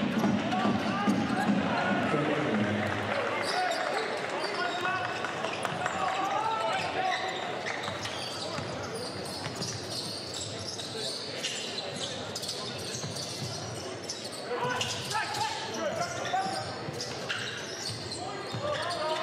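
Basketball bouncing on a hardwood court during play, among indistinct voices, with a louder burst of voices about three-quarters of the way through.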